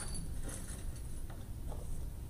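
Meeting-room tone: a steady low hum with a few faint clicks and rustles.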